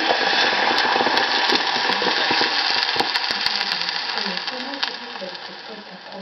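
Crème fraîche poured into hot oil in a stainless-steel pot, sizzling loudly with scattered crackles, the sizzle dying down over the last second or two.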